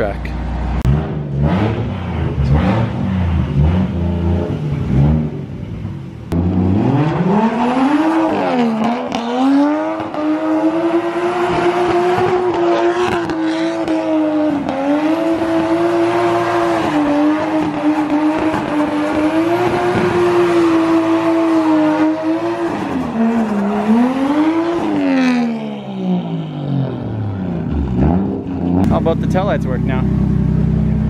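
Turbocharged 1JZ inline-six in a Nissan S13 drift car revving hard during donuts. The engine note rises sharply about six seconds in and is held high with small dips for most of the time, with tyres squealing. It falls back near the end.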